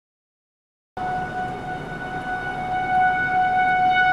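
Silence for about a second, then an outdoor civil-defence tornado warning siren sounding a steady tone, slowly growing louder.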